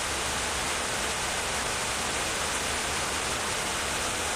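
A steady, even hiss of background noise with no changes and no distinct events.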